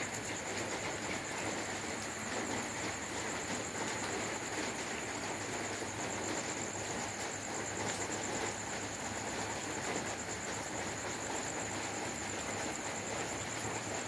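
Steady night-time insect chorus: a high, continuous, finely pulsing trill over an even hiss, with no frog croaks.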